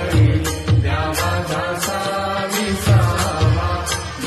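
Devotional Hindu song: a voice singing a chant-like melody over music with a steady percussion beat of about two strikes a second.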